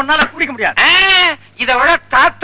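Men laughing loudly in high-pitched, wordless bouts. About a second in comes one long, drawn-out, rising-and-falling cry.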